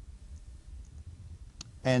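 Low steady room hum with one faint, sharp click about one and a half seconds in, and a couple of fainter ticks before it.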